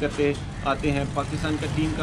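A man talking in Urdu, with a steady low rumble underneath.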